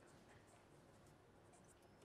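Faint scratching of a pen writing on paper, a few soft strokes over near-silent room tone.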